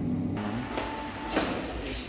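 Steady low hum of a passenger lift running, cut off abruptly about a third of a second in. After it comes a quieter stretch with a brief faint high tone and a single knock about one and a half seconds in.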